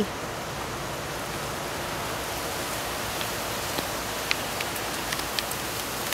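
Steady outdoor background hiss with a few faint short ticks in the second half.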